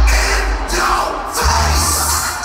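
Loud live concert music with a heavy bass line, heard from within the crowd, with voices shouting over it. The bass drops out for about a second midway and comes back.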